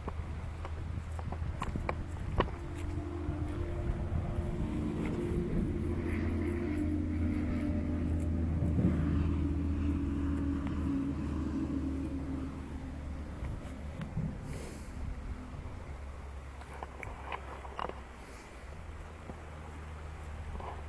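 A motor vehicle's engine drone passing at a distance, swelling over several seconds and fading away, with scattered clicks and knocks from handling close by.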